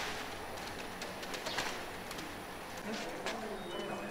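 Thrown sheets of paper rustling and landing: scattered light ticks and rustles over a quiet background, with faint voices about three seconds in.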